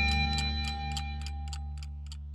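Electric bass (Fender Precision through a Hiwatt amp) letting the song's final note ring out and slowly fade, with a steady, fast ticking running through it.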